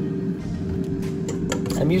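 Air fryer running with a steady hum over a low rumble, with a few light clicks near the end.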